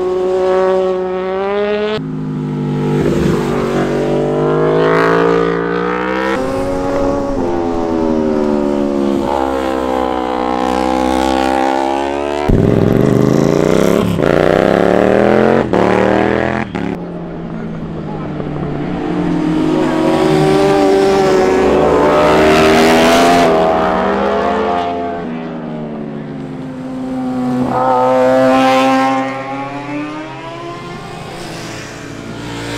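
Sport motorcycles passing one after another through a corner, engines dropping in pitch as they brake in and climbing again as they accelerate out. About halfway through, one bike accelerates hard, its pitch rising steeply with short breaks at each upshift.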